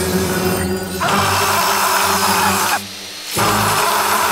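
Grinding wheel grinding steel blades. The grinding noise breaks off for a moment near three seconds in and then starts again, over background music.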